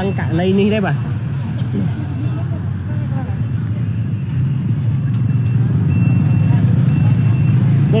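Road traffic: the low engine and tyre rumble of passing vehicles, growing louder about halfway through as a car comes near. A faint, high beep repeats at intervals.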